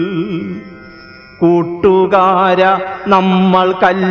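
A man's voice chanting a Malayalam poem in a sung recitation, holding long notes with a wavering vibrato. The line trails off about half a second in, and after a short gap the voice comes back strongly about a second and a half in with more held notes.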